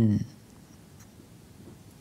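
A man's voice finishes a phrase just after the start, followed by a pause holding only faint, steady room noise.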